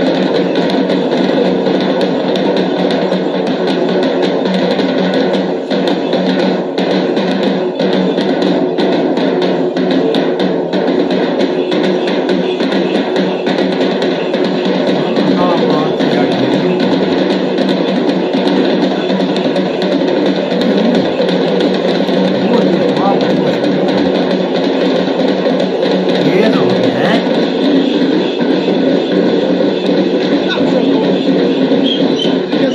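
Traditional Kerala drum ensemble, chenda-style drums struck with sticks, playing a fast, dense, continuous rhythm with a crowd's voices underneath.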